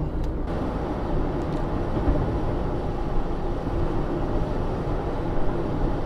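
Steady road and engine noise inside a Mazda 323F's cabin while cruising on a motorway, with a faint steady hum under the tyre roar.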